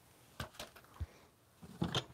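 A few light clicks and knocks as a cordless jigsaw is set down among other power tools and a hand reaches into a plastic tool box, with more small knocks near the end.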